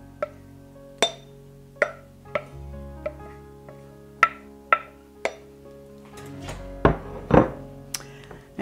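Soft background music of held notes, over a series of sharp clicks and two heavier knocks near the end: a wooden spoon knocking against a glass bowl and the rim of a stainless steel pot as shredded chicken is scraped into the pot.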